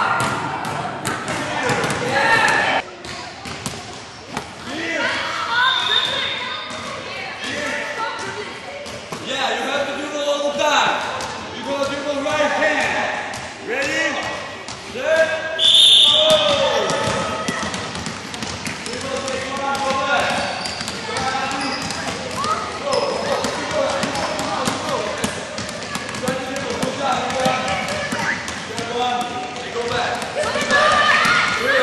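Basketballs bouncing on a gym floor, with voices talking in the background of a large hall. A brief sharp high-pitched sound stands out about halfway through.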